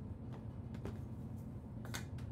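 Bicycle turning slowly on an indoor trainer, a faint steady low hum with a few light clicks.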